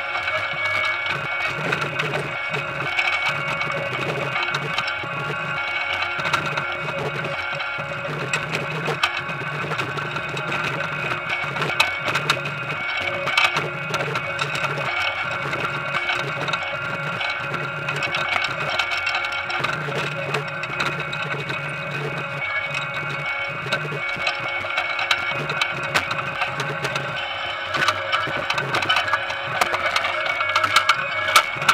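Potato harvester running, with a steady many-toned mechanical whine and a low hum that comes and goes. Over it, constant small knocks and clatter of potatoes tumbling along the sorting belt.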